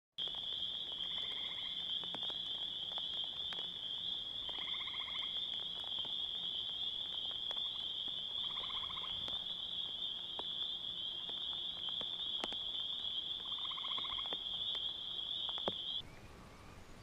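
An animal chorus: a steady high-pitched trilling drone with a shorter, lower trilled call repeating about every four seconds, four times. It stops abruptly at the end.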